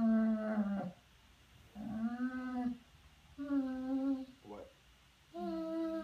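Basset hound whining in long, low, steady-pitched moans, each about a second long with short pauses, and one brief rising whine between them: an attention-seeking whine from a dog that wants still more cuddling.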